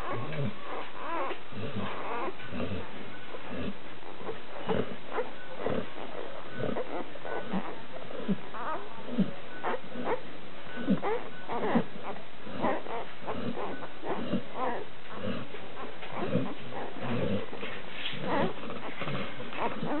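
A litter of week-old Labrador Retriever puppies nursing from their mother: a busy, continuous run of short squeaks, grunts and suckling noises.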